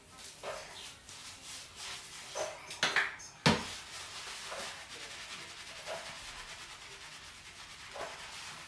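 Hands scrubbing shampoo lather into short wet hair, a steady rubbing that settles in from about four seconds on. It is preceded by a few scattered handling noises and one sharp knock about three and a half seconds in.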